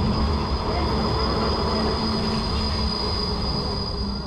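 Articulated electric tram running through a curve: a steady rumble of wheels and running gear with a thin, steady high-pitched wheel squeal on top.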